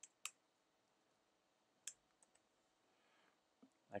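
A few faint, separate computer-keyboard keystrokes as digits are typed, two near the start and a few more around the middle, over near silence.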